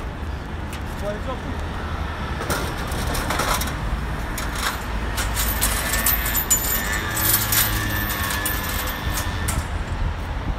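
Busy city street: a steady low rumble of road traffic, with scattered light clicks and knocks and indistinct voices.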